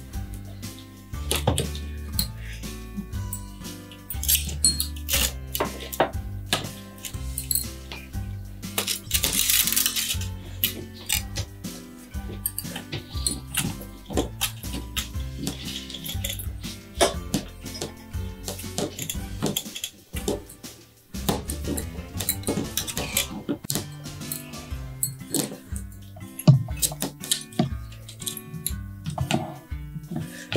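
Background music with light clinks throughout, from craft wire and glass jars being knocked together as wire-hung pom poms are set into jars of borax solution on metal trays.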